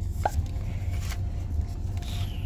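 Light handling of a small cardboard box going into a paper shopping bag, with faint rustles and clicks, over a low steady rumble inside a car. A short rising squeak sounds about a quarter second in.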